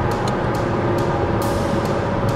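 Steady road and engine noise inside a car's cabin at highway speed: an even drone of tyres and engine.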